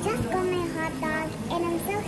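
A young girl's voice talking, in short phrases with a rising and falling pitch.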